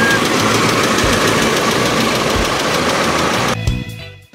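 Background music with a steady beat over a Nissan twin-cam 16-valve four-cylinder engine idling. The engine noise cuts off suddenly near the end, leaving only the music.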